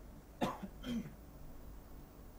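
Two short coughs from a man, about half a second apart.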